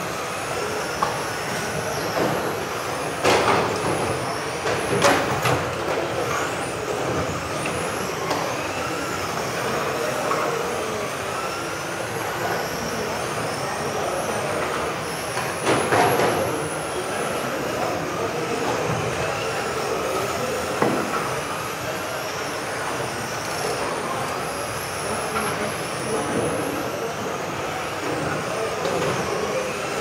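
Several electric 1:10 radio-controlled touring cars racing round a hall track, their motors giving high whines that rise and fall as they accelerate and brake. A few sharp knocks come through, about three, five, sixteen and twenty-one seconds in.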